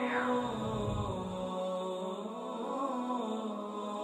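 Background music of sustained, slowly shifting wordless vocal chant, with a short falling swoosh and a low rumble at the start.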